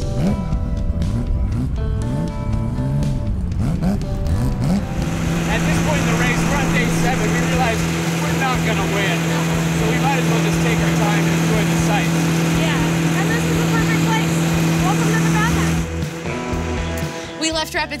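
A vintage car engine revving up and down for the first few seconds, then running at a steady speed, mixed with background music.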